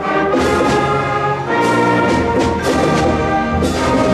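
Seventh-grade concert band playing loud held brass and woodwind chords, punctuated by several percussion hits.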